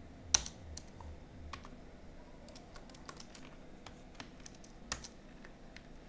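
Computer keyboard typing: sparse, irregular keystrokes, with two louder clicks, one just after the start and one about five seconds in.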